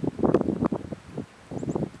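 Crackling rustle with wind noise on the microphone, coming in irregular spells: a longer one in the first second and a shorter one near the end.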